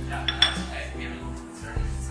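A white ceramic saucer set down on a stone countertop, clinking sharply twice with a brief ring about half a second in, over background music.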